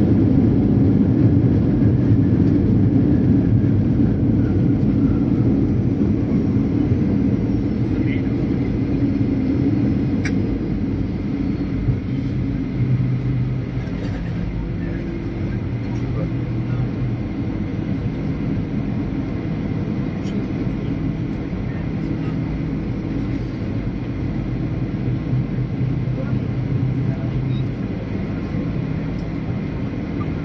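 Cabin noise of a Boeing 737-800 rolling out on the runway after touchdown: a loud rumble of its CFM56 engines and the rolling aircraft. It eases off over the first dozen seconds as the plane slows, then settles into a steadier, lower hum, with a single click about ten seconds in.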